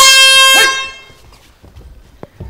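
Round-start horn sounding once: a loud, steady, single-pitched blast lasting well under a second, fading out about a second in, signalling the start of the round.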